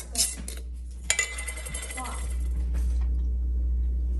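Metal screw bands of glass canning jars being unscrewed and set down, a few sharp clinks of metal on glass and countertop; the loudest, about a second in, rings briefly.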